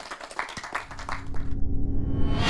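Audience applause, a scatter of separate hand claps. About one and a half seconds in the clapping cuts off and an outro jingle begins: a held tone under a swelling whoosh.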